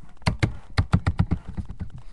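A quick run of about eight sharp taps or clicks close to the microphone, bunched within about a second.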